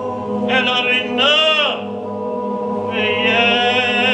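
A man's voice chanting Jewish liturgical prayer in a melismatic style: two phrases that swell up and fall back in pitch, then a long held note with a wavering vibrato from about three seconds in. Beneath it, other men's voices hold a steady chord.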